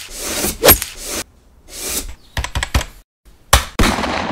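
Sound effects of an animated channel logo: rushing swooshes that build to sharp hits, a quick rattle of short clicks about two and a half seconds in, and two more sharp hits near the end.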